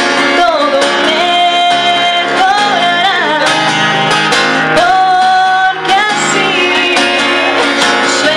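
A woman singing live over her own strummed acoustic guitar, holding two long notes, one a couple of seconds in and one about five seconds in.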